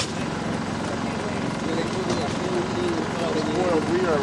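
Indistinct voices talking over a steady, dense engine-like running noise, with one sharp click right at the start.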